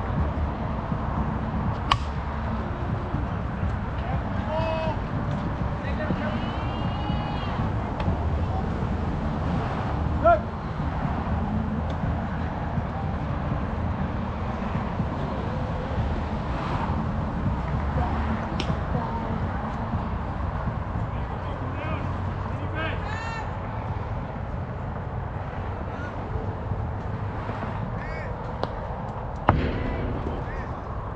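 Players shouting and calling out across an outdoor softball field over a steady low background rumble. Now and then there is a sharp knock, the loudest about ten seconds in.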